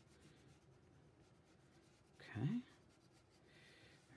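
Faint scratching of a wax crayon colouring in on paper.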